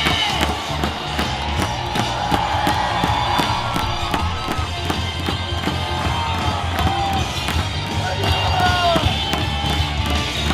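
Stadium cheering section: a cheer song with a steady bass beat over the loudspeakers, a large crowd chanting along, and sharp claps or thunderstick clacks in time with the beat.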